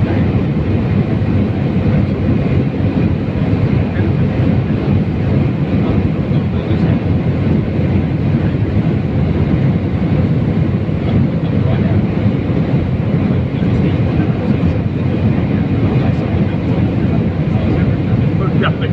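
Steady, loud cabin noise of a jet airliner in flight: the underwing turbofan engine and rushing airflow heard from inside the cabin, with a faint steady high whine over the low noise.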